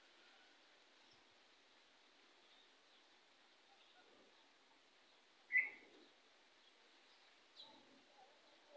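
Faint outdoor background with a single short, sharp bird chirp a little past halfway through, and a fainter, higher chirp near the end.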